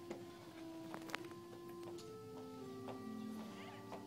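Soft organ music in slow, held notes that change every second or so, with a sharp click about a second in.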